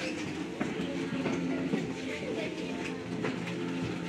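Visitors talking quietly in a large room, over background music of long held notes at several pitches, like slow choral singing.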